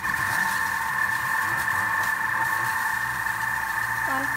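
Vorwerk Thermomix running at speed 1.5 as it creams butter and sugar in its steel bowl, with a steady motor whine.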